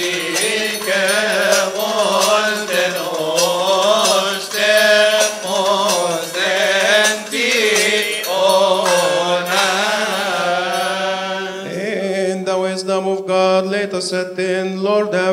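Men chanting a Coptic Orthodox liturgical hymn in unison, the melody winding up and down on long held vowels over a steady low note.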